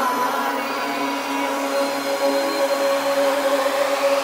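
Electronic psytrance breakdown without bass or kick: sustained synthesizer tones over a noise sweep that rises in pitch toward the end.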